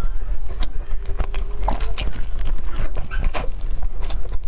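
Close-miked chewing: irregular wet clicks and smacks of a mouth eating a filled dumpling, over a steady low hum.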